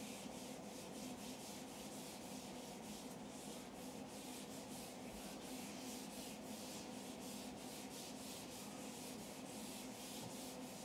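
Whiteboard eraser wiping marker off a whiteboard in quick, repeated back-and-forth strokes, faint and scratchy.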